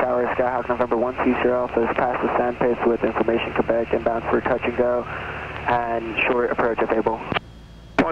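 Voices over a light aircraft's radio and intercom headset audio, thin and cut off in the treble, with the steady drone of the single piston engine underneath. Near the end the voices stop and the audio drops, leaving a faint steady tone.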